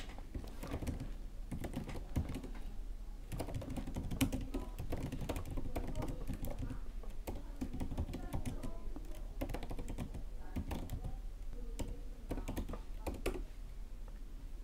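Typing on a computer keyboard: quick runs of key clicks with short pauses between them, as terminal commands are entered.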